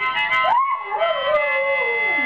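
Dalmatian howling: one long, wavering howl that rises in pitch in the first half second and then slides down, over music.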